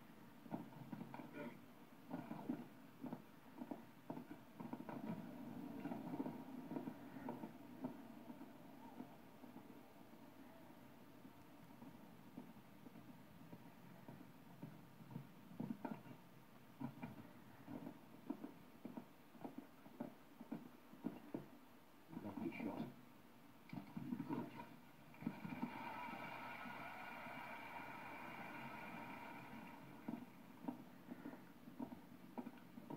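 Faint, irregular thuds of a show-jumping horse's hooves as it canters and jumps the course, heard through a television's speaker. A steadier, more even sound joins about 25 seconds in.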